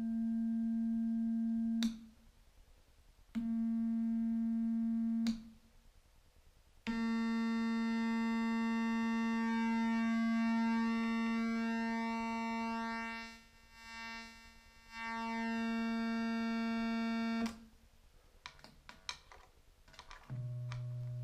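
A VCO of an Elektor Formant modular synthesizer sounds a steady mid-pitched tone rich in overtones. The tone cuts out and comes back three times, each break marked by a sharp click as patch cables are moved. In the longest stretch its overtones shift and cross against each other as the controls are worked, with a brief dip in the middle; a few more clicks come near the end.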